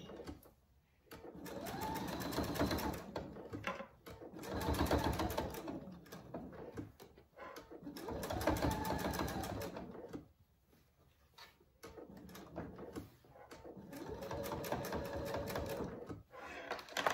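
Electric domestic sewing machine stitching through several layers of folded cotton fabric. It runs in several spells of rapid, even needle strokes with short pauses between them, as a square of stitching is sewn and the fabric is turned at each corner.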